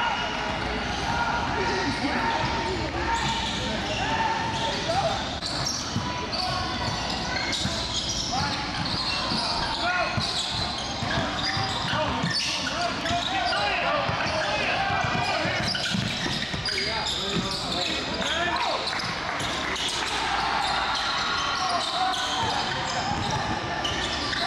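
Live sound of a basketball game in a gym: a basketball bouncing on a hardwood court amid players' and spectators' voices calling out and chattering, echoing in the large hall.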